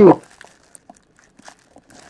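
Faint, sparse crinkling of plastic shrink-wrap and soft handling noises from a cardboard trading-card box being turned over.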